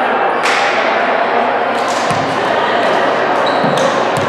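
Indistinct chatter of players and spectators echoing in a large gymnasium, with a few sharp thuds of a volleyball hitting the hardwood floor: about half a second in, around two seconds and near the end.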